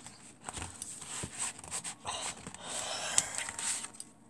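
Paper and card craft supplies being handled on a desk: a few light taps and clicks, then rustling and sliding of paper for the second half, with one sharp click about three seconds in.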